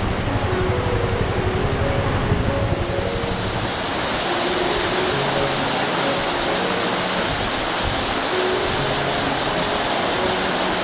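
Rushing water: a waterfall's low rumble that, about three seconds in, gives way to the brighter hiss of whitewater pouring over rocks. Soft background music with held notes plays under it.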